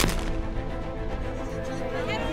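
A single trap shotgun shot right at the start, ringing out briefly, over background music.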